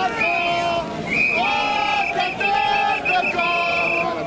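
A loud voice chanting in long notes held at a steady pitch, several in a row, with a quick run of short chopped syllables a little past halfway.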